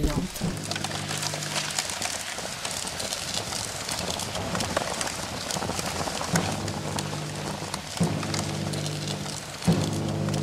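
Fire crackling: a dense, even crackle of many small snaps. A low held musical note sounds under it near the start and again in the second half.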